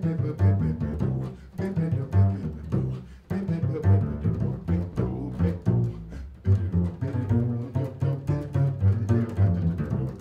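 Upright double bass played pizzicato in a jazz solo: a quick, uneven run of plucked low notes, several a second.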